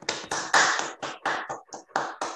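Hand clapping from a few people heard over a video call, a quick uneven patter of claps that thins out near the end.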